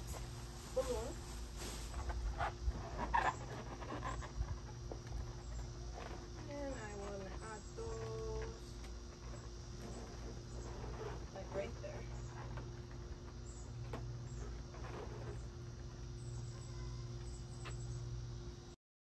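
Small latex balloons squeaking and rubbing against each other as a cluster of four is twisted together and pressed into a balloon garland. There are short squeaky glides, most of them near the start and around the middle, over a steady low hum.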